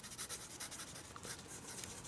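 Pencil writing a word on paper: a quick run of faint, scratchy strokes.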